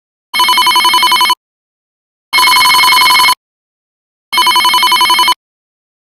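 Smartphone alarm ringing: three electronic rings of about a second each, about two seconds apart. The first and last warble rapidly and the middle one holds steady.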